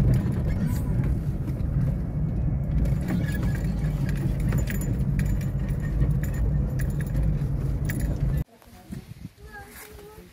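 Car driving on a rough dirt road, heard inside the cabin: a steady low engine and road rumble with frequent small rattles and clicks from the bumpy surface. It cuts off abruptly about eight and a half seconds in, leaving a much quieter background.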